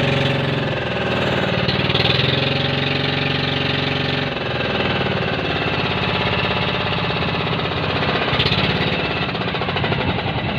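Engine of a wooden outrigger banca boat running steadily under way, a rapid, even pulsing chug.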